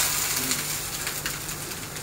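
Steady sizzling of dosa batter on a hot griddle, easing off slightly, with a few faint clicks.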